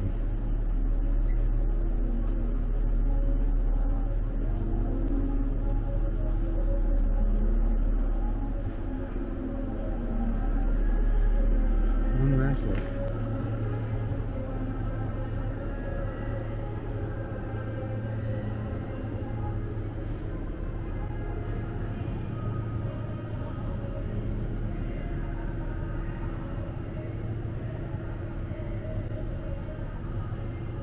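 Indoor ambience of a large hall: a steady low rumble under indistinct, far-off voices. The rumble eases and the whole sound drops in level about twelve seconds in.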